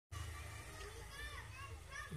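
Faint background voices over a low steady hum, cutting in suddenly just after the start.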